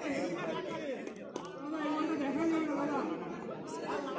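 Background chatter of many people talking at once, with no single voice standing out.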